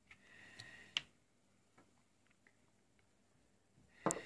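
Near silence with a few faint clicks and taps from small objects being handled on a table. The sharpest click comes about a second in, followed by a few fainter ticks.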